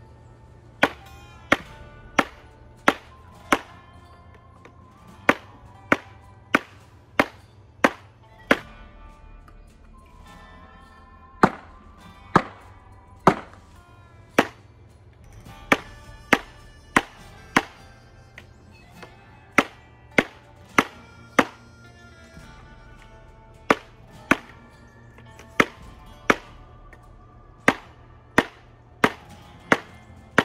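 Ka-Bar Potbelly knife of 1095 Cor-Van steel chopping into a copper tube on a wooden sawhorse: sharp metal-on-metal strikes, about one and a half a second, in runs of three to six blows with short pauses between, over thirty in all. Background music plays underneath.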